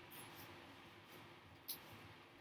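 Near silence: room tone, with a faint short high click or squeak about one and a half seconds in.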